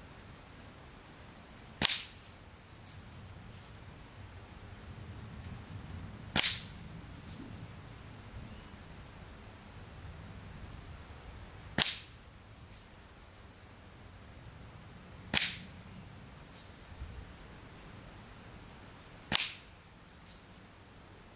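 Five shots from a Daystate Huntsman Classic .177 pre-charged pneumatic air rifle with a shrouded barrel, each a short sharp crack a few seconds apart, with a much fainter click about a second after each shot.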